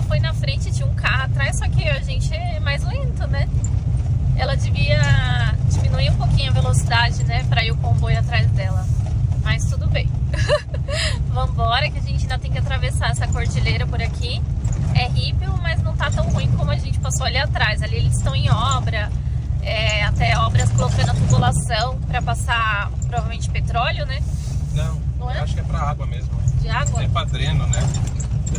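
Motorhome driving, heard from inside the cab: a steady low rumble of engine and road, with voices over it.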